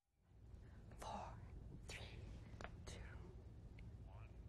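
Very faint speech, close to a whisper, over a steady low hum that fades in at the start, with a few short hissy sounds about a second apart.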